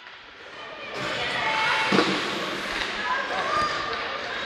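Ice hockey rink sound during play: skates scraping the ice and faint voices in the arena, with one sharp knock about two seconds in, typical of a stick hitting the puck or the puck striking the boards.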